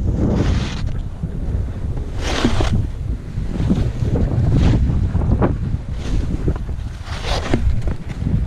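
Skis scraping and swishing over packed snow in a mogul run, one hiss on each turn every couple of seconds, over a steady rumble of wind on the microphone.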